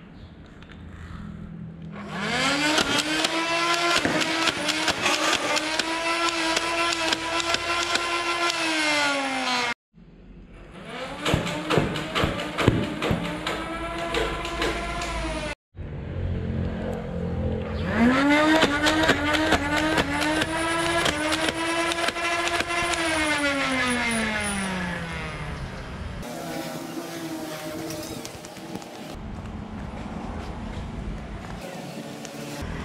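Nerf Ultra 2 blaster's battery-powered flywheel motor whining up to speed, holding a steady whine while darts are fired with sharp rapid clicks, then winding down with falling pitch. This happens twice, with abrupt cuts between runs.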